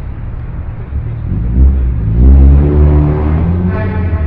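Sound effect of a car traffic jam: a steady low rumble of idling engines, with an engine revving up from about a second in, loudest around the middle.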